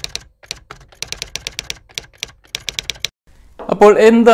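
Typing sound effect: quick, irregular keystroke clicks in short runs, matching text being typed onto the screen. The clicks stop about three seconds in, and a man's voice begins near the end.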